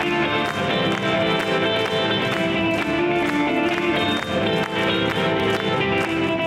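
A live band plays an instrumental passage: an electric guitar leads over acoustic guitar, bass guitar and cajón, with a steady percussive tapping beat.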